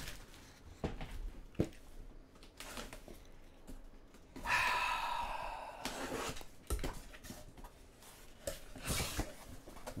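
Cardboard shipping case being handled and opened by hand: soft knocks and rubbing, with a rasping scrape of cardboard lasting about a second and a half near the middle.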